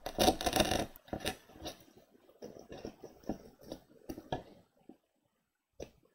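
Crinkling and rustling of metallic-foil spandex fabric squares being handled and pushed into a styrofoam ball with a wooden skewer. A dense burst of crackling in the first second, then scattered clicks and rustles, stopping about five seconds in, with one more short click near the end.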